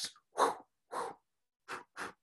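About five short hand claps, unevenly spaced.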